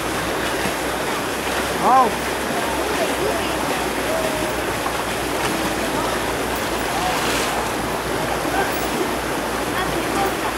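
Steady splashing and churning water around an elephant lying in a shallow pond.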